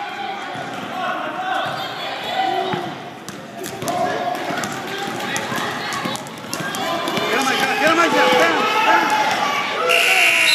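A basketball bouncing on a gym floor, with scattered thuds, under overlapping shouts and chatter from players and spectators in the echoing gym.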